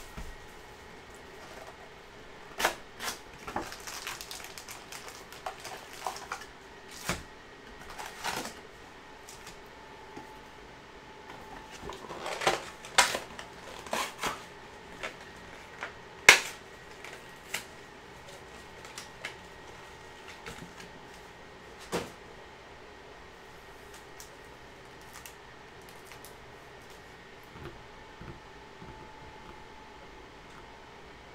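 Foil-wrapped trading card packs being pulled out of cardboard boxes and stacked, with irregular crinkles, taps and knocks. The sharpest knock comes about sixteen seconds in, and the handling thins out in the last third.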